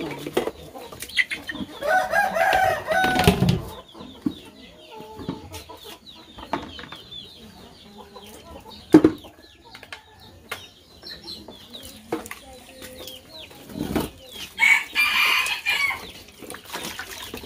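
A rooster crows about two seconds in, and a second chicken call comes near the end, over faint high cheeping. Occasional sharp clinks and a knock come from dishes and plastic buckets being handled during dish washing.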